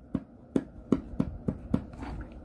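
Marking pencil tapping and dabbing on fabric over a hard desk beside a quilting ruler: a string of light taps, about three a second.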